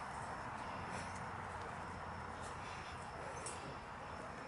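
Faint, steady outdoor background hiss with a few soft rustles and ticks from a small puppy moving about on a lap on the grass.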